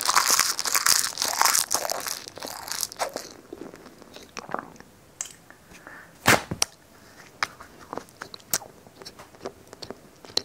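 Clear plastic wrapping crinkling for the first three seconds. After that, the quieter handling of first-aid supplies brings sparse small clicks and rustles, with one sharper crunch about six seconds in and another near the end.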